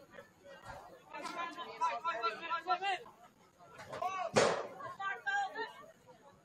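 Players and coaches shouting and calling out on a soccer field, with one sharp thump about four seconds in.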